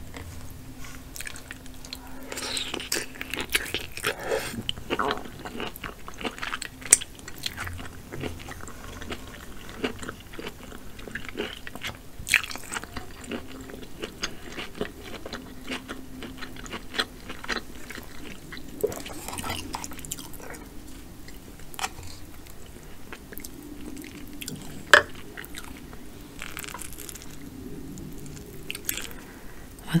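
Close-miked chewing and biting of king crab leg meat, with scattered sharp clicks throughout.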